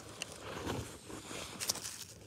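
Faint crunching and rustling of powdery snow and dry leaves as a small toy figure is moved over the ground by hand, with a few light clicks.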